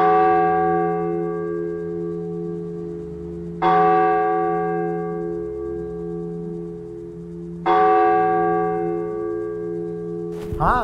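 A deep bell struck three times, about four seconds apart, each strike ringing on and slowly fading, over a steady low drone in the film's music score.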